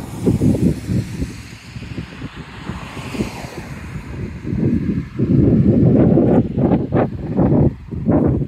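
Wind buffeting the microphone in gusts, a low rumble that is strong in the first second, eases off, then comes back loud in the second half.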